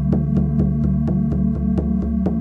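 Meditation drone music: a steady low hum with held higher tones, pulsing in an even throb about four times a second.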